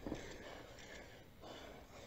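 Faint background noise with no distinct event.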